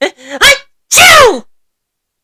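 A man's acted sneeze, done in character as a cartoon dog: a short rising "ah" about half a second in, then a loud, longer "choo" that falls in pitch.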